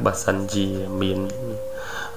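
Speech only: a voice narrating a story in Khmer, with one long drawn-out syllable in the middle.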